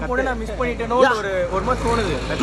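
Men's voices talking in the street, over a steady low rumble.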